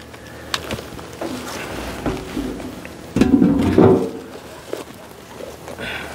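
A beehive's cover and metal roof being handled and set back in place: a few light knocks early, then a louder stretch of scraping and rattling about three seconds in.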